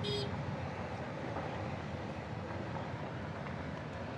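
Steady low rumble of a vehicle driving on an unpaved road, with a brief high-pitched tone right at the start.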